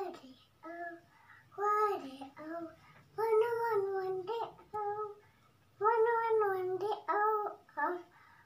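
A young girl singing in short phrases, several notes held for about a second, with brief pauses between them.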